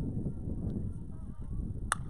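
A softball bat hitting the pitched ball, a single sharp crack near the end.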